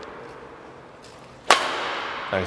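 A badminton racket striking a shuttlecock on a backhand drive: one sharp crack about one and a half seconds in, echoing briefly in a large hall.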